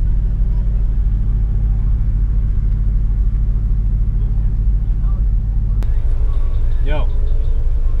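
The Civic's JDM B20B four-cylinder idling through its Vibrant aftermarket exhaust, a steady low rumble heard from inside the cabin. A click about six seconds in, after which the idle takes on a more pulsing tone.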